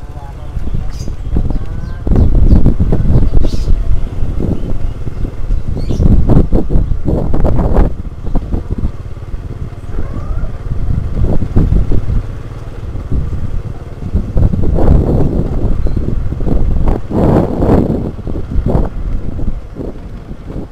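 Motorcycle engine running while riding, with heavy wind buffeting on the microphone that swells and dips unevenly.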